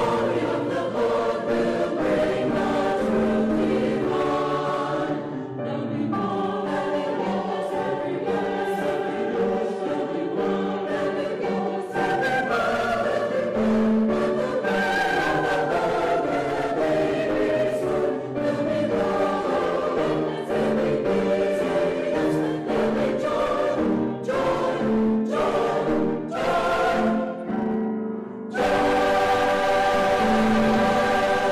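Choral music: a choir singing slow, sustained chords that shift every second or so, with a fuller, louder passage starting near the end.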